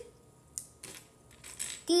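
A few faint, short clicks of small hard puzzle pieces being picked up and set down on the table.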